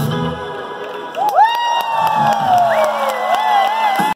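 A live rock band's song ends about half a second in, and the club crowd cheers, led by one loud, long whoop near the microphone that slides slowly down in pitch, with more wavering shouts after it.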